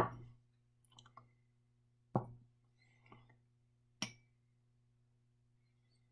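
Glass beakers being handled. There are three sharp, faint knocks, one at the start, one about two seconds in and one about four seconds in, with lighter clinks between.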